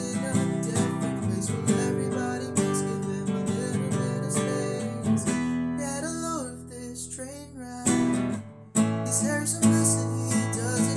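Instrumental passage of strummed acoustic guitar with a violin melody sliding over it. The strumming gives way to held chords about halfway through, goes quiet briefly, then comes back strongly near the end.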